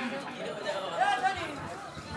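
Low, indistinct talking and chatter, with no one speaking clearly into the microphone.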